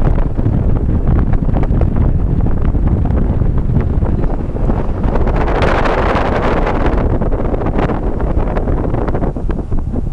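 Wind buffeting the camera microphone, a heavy, irregular low rumble, with a stretch of louder hiss just past the middle.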